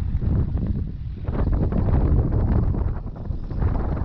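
Wind buffeting the camera's microphone: an uneven low rumble that swells in gusts about a second and a half in and again near the end.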